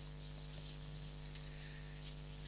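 Faint steady electrical hum with a low background hiss; no distinct event stands out.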